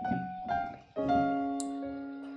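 Piano chords: a held chord fades out, then a new chord, a C-sharp major triad, is struck about a second in and left to ring.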